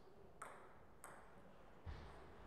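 Two light clicks of a table tennis ball bouncing, about two-thirds of a second apart, then a dull low thump near the end.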